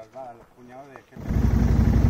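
Faint voices talking, then about a second in an ATV engine cuts in suddenly and runs at a steady, low, evenly pulsing idle.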